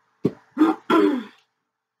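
A woman clearing her throat: a sharp catch followed by two short voiced sounds, over in about a second.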